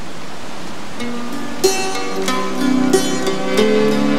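A steady rushing noise, then plucked-string instrumental music entering about a second in, its notes picked out one after another and ringing on over the noise.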